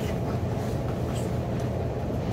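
Steady low hum with faint background room noise.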